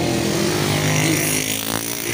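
Motorcycle engine running as it passes close by, a steady engine note.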